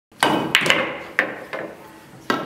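Pool balls clacking together on a pool table: about five sharp knocks with a short ring, three close together, then two more, getting quieter.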